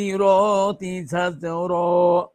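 A man chanting Arabic Quranic verses in the melodic recitation style, holding long steady notes in phrases with short breaks between them.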